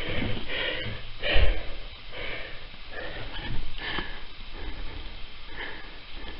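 A man breathing and sniffing close to the microphone, in short uneven puffs about once a second, with a soft bump about one and a half seconds in.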